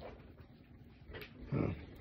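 Faint handling and rustling sounds of a phone being moved about, then a man's short hesitant 'uh' near the end.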